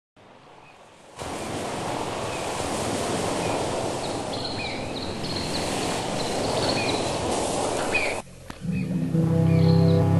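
Steady wash of ocean surf with small birds chirping over it, cutting off abruptly about eight seconds in. Music with sustained low notes starts a moment later.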